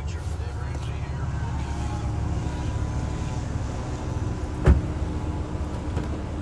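A car door on a 2019 Audi RS 5 Sportback being shut, a single solid thump a little under five seconds in, over a steady low rumble.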